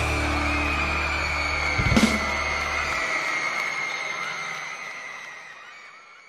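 A rock band's closing chord ringing out: a last drum and cymbal hit about two seconds in, the bass stopping soon after, and a high held note fading away.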